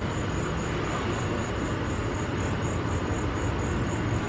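Steady, even background rumble and hiss with no distinct events.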